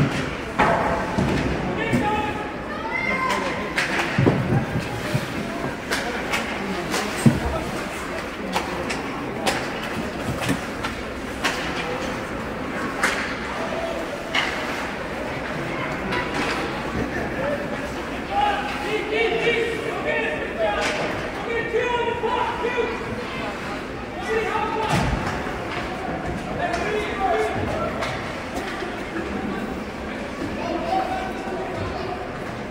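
Ice hockey game sounds in an arena: indistinct voices calling out throughout, broken by several sharp knocks and thuds of pucks and sticks against the boards and glass, the loudest about seven seconds in.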